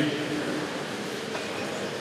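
A pause in a man's speech through a microphone: his last drawn-out syllable fades in the first moment, leaving a steady hiss of reverberant room noise in a large church.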